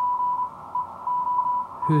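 Morse code (CW) from an amateur station on the 40-meter band, received by an RTL-SDR through a homemade upconverter and heard as a tone of about 1 kHz keyed on and off in dots and dashes. It is sent slowly, at a pace the listener calls more his speed on the key.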